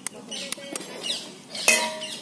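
Knife and egg knocking against a stainless-steel bowl: a couple of light clicks, then a sharper metallic clink with a short ring near the end as the egg is struck to crack it.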